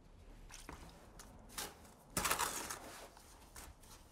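Lime putty and sand being mixed by hand in a plastic bucket for a lime plaster: soft, gritty scraping and squishing, with one louder scrape a little past two seconds in.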